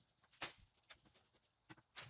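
Near silence with a few faint, short rustles and taps from hands handling things on a table, the clearest about half a second in.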